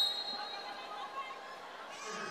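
Indoor arena crowd murmuring, with a volleyball bounced a couple of times on the court floor before a serve.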